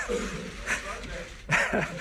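A man laughing emotionally in short, halting bursts, his voice catching as he tries to regain composure.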